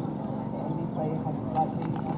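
Indistinct voices talking, with a few sharp clicks or knocks near the end.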